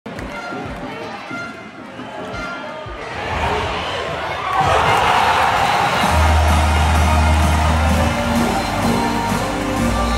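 Handball arena crowd bursting into loud cheering for a goal: the noise builds about three seconds in and swells to full volume at about four and a half seconds. Background music with a deep bass note comes in under the cheering near the middle.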